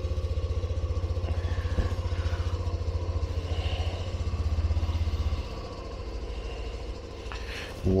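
Honda Trail 125's single-cylinder four-stroke engine idling just after start-up, a steady even putter that gets quieter about five seconds in.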